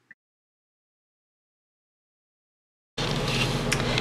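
Dead silence for about three seconds, then a steady hiss with a low hum of background noise comes in.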